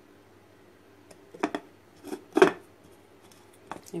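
A few short knocks and clicks of a blender jar being handled and set against hard surfaces, the loudest about two and a half seconds in, over a low steady hum.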